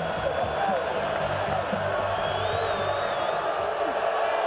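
Football stadium crowd noise with music playing over it, low sustained notes shifting in pitch step by step.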